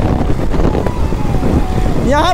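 Heavy wind buffeting the microphone of a camera on a moving KTM RC 200 motorcycle, a steady low rumble, with the bike's single-cylinder engine running faintly underneath at a constant speed.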